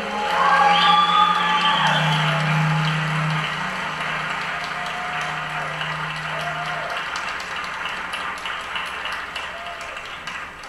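Audience applause with a few cheers, swelling about half a second in and slowly dying down toward the end.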